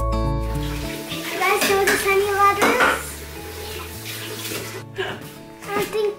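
Kitchen tap running water into the sink, an even rush heard under background music. A child's voice speaks over it about a second in.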